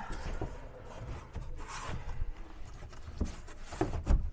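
A thin 5 mm plywood template rubbing and scraping as it is shifted and pressed against a plywood-lined van wall to test its curved edge for fit. There is a brief louder scrape a little under two seconds in and a couple of light knocks near the end.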